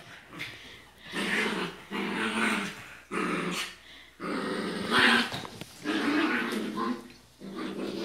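Small dog growling in play: a run of short, rough growls one after another, each about half a second to a second long, while being roughhoused on a sofa.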